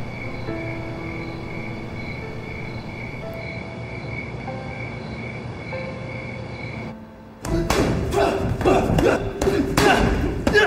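Insects chirping in an even pulse, about three chirps a second, over a steady hiss, with soft held music notes. About seven and a half seconds in it breaks off into a loud, busy stretch of thumps and voices.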